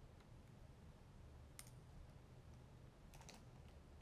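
Near silence: room tone with a few faint, short clicks, one about a second and a half in and a small cluster near the end.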